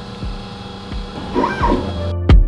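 A steady machine hum, with a short whine that rises and falls about a second and a half in.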